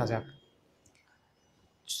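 Speech trailing off, then a pause of near silence with one faint click, then speech starting again just before the end.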